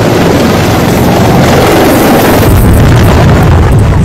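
Military attack helicopters passing very low overhead: loud rotor and engine noise with the rotor downwash buffeting the microphone. The low rumble grows heavier about two and a half seconds in.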